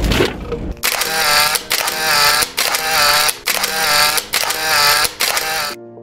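Sound effects of an animated subscribe-button graphic: a run of about six ratcheting, mechanical click-and-whirr bursts, roughly one a second.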